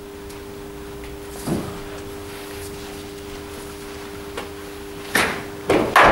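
A cricket ball played off the bat in indoor nets: two sharp knocks near the end, the louder second one the crack of the bat meeting the ball, over a steady two-tone hum.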